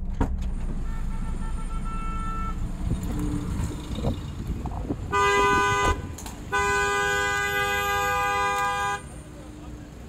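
Car horn sounding: a faint toot early on, then a short loud blast about five seconds in and a longer blast of about two and a half seconds right after. A low traffic and engine rumble runs underneath in the first half.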